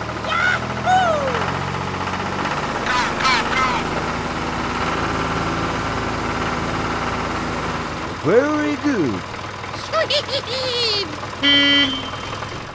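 A tractor engine running steadily, with short wordless vocal calls over it. The engine drops away about eight seconds in, and more of the short calls follow.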